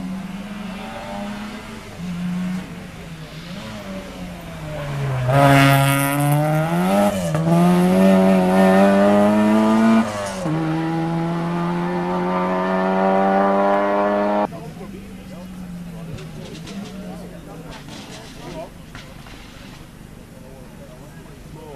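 A rally car passing at speed. Its engine gets louder, becomes loud about five seconds in, dips in pitch and then climbs hard. A gear change drops the pitch about halfway through, and the engine climbs again until it cuts off suddenly, leaving a faint engine far off.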